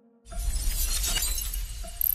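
Glass-shattering sound effect in a hip-hop track's intro: a noisy crash that starts about a quarter second in and rings on, fading a little, for about a second and a half, with a faint plucked-string note near each end.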